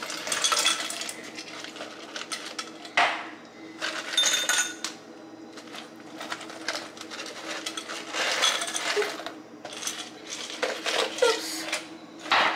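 Ice cubes tipped from a foam cup into drinking glasses, rattling and clinking against the glass in several short spells.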